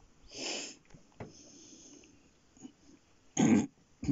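A person's breaths: a soft breath about half a second in and a short, louder one about three and a half seconds in, with faint clicks between.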